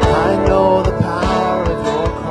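Live worship band playing a song: strummed acoustic guitars, electric guitar, bass and a drum kit keeping a steady beat.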